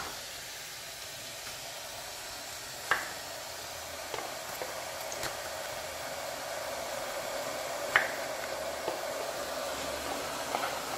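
Mellerware glass electric kettle heating water: a steady hiss that slowly grows louder as the water nears the boil. A few light clicks come through, the sharpest about three seconds and eight seconds in.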